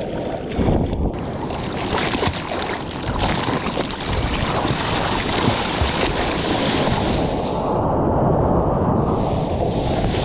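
Sea water rushing and splashing around a surfboard and a GoPro held close to the water, with wind buffeting the microphone. The high hiss briefly drops away for about a second near the end.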